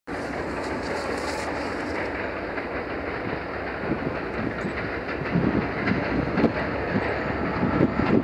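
Approaching freight train led by a GE AC4400CW diesel locomotive: a steady rumble of engines and wheels, with knocks of the wheels on the rails growing louder over the last few seconds as it nears.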